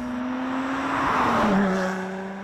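Lotus Exige S Roadster's supercharged 3.5-litre V6 driving past, loudest about a second and a half in, its engine note dropping in pitch as the car goes by.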